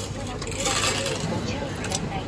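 Coins clattering briefly, about half a second in, as a station ticket machine pays change into its change tray.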